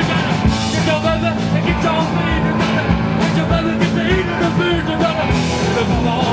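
Live rock band playing: drums, guitar and bass with a singing voice over them, loud and driving.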